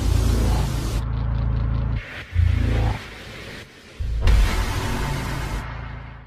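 Cinematic trailer sound design: loud noisy whooshing surges over a deep bass rumble, with a low boom about two and a half seconds in and a second big surge about four seconds in that then tapers off.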